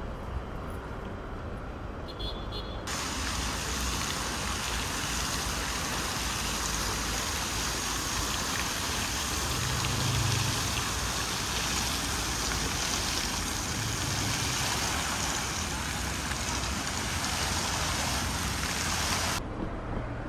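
Road traffic passing, then, about three seconds in, a fountain's water jets splashing into their pool: a steady, even rush of falling water that cuts off just before the end.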